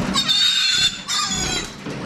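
Piglet squealing as it is grabbed and held up by a hind leg: two long, high-pitched squeals, the second shorter.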